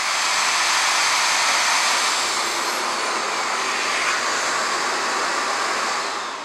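Numatic NDD 900A vacuum extractor running at full suction, a loud, steady rush of air. It has been started automatically through its auxiliary socket by switching on an electric drill plugged into it.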